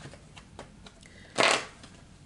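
Tarot cards being handled: a few faint clicks, then one short sliding rustle of cards about one and a half seconds in.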